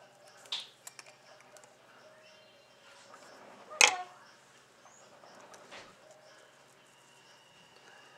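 Scissors snipping lace trim near the start, then a single sharp clack just before the four-second mark as the scissors are set down on the table, with small handling clicks of the lace and fingers around it.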